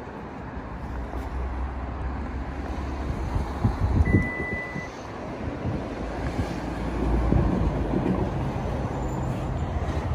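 Wind rumbling on the phone's microphone over outdoor traffic noise, rising and falling. A few short knocks come near four seconds in, along with a brief steady electronic beep lasting under a second.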